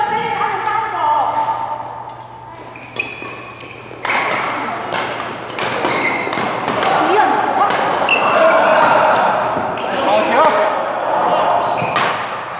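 Badminton rally: racket strings striking a shuttlecock in sharp cracks, about one a second from about four seconds in, each hit echoing in a large hall.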